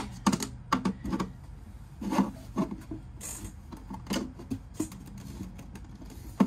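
Irregular clicks, taps and scraping as a flat pry tool works the flexible plastic side trim of a Glowforge lid away from its glass side panel.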